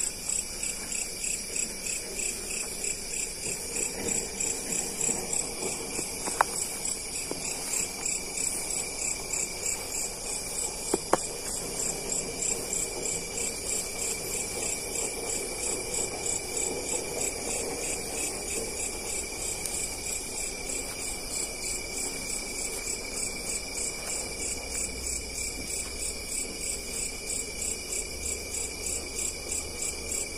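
Night chorus of crickets and other insects in the grass: a steady, high-pitched trilling that pulses in an even rhythm. Two sharp clicks stand out above it, about six and eleven seconds in.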